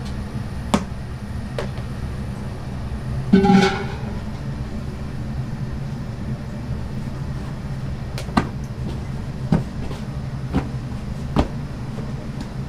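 Steady low hum of kitchen machinery, with scattered sharp clicks and knocks from work in the kitchen and one louder brief clatter about three and a half seconds in.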